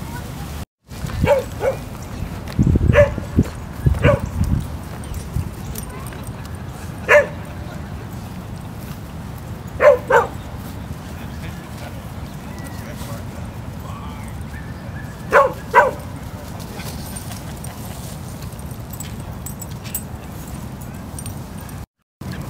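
Dogs barking in play: short, sharp yips, often in quick pairs, about nine scattered through the stretch with gaps of several seconds between them.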